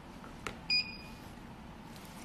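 A single short electronic beep about three-quarters of a second in, one steady high tone lasting about a fifth of a second, with a light click just before it.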